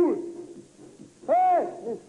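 A person's voice giving short hooting calls, each rising and then falling in pitch: one right at the start and another about a second and a half in.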